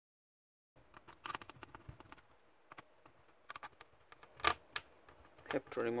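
Silence for a moment, then scattered small sharp clicks and taps from fingers handling the plastic and metal parts of an opened Asus X555L laptop's chassis and motherboard, the loudest about four and a half seconds in. A voice says "remove" at the very end.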